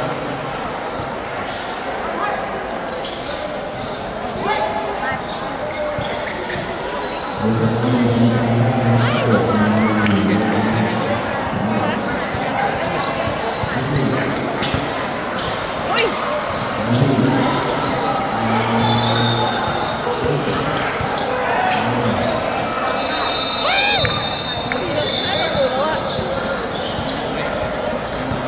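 A 3x3 basketball game in play: the ball bouncing on the hard court and players' sneakers squeaking, over voices of players and onlookers. High squeaks come near the end.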